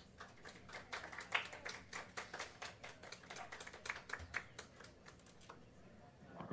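Light applause from a small audience: scattered separate hand claps at the end of a tune, thinning out near the end.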